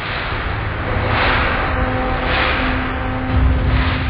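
Logo sound effect: a rushing whoosh that swells about three times over a deep rumble, with faint held tones underneath. The rumble is strongest near the end, as the title comes up.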